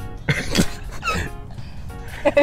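Laughter in a few short voiced bursts in the first second or so, over quiet steady background music.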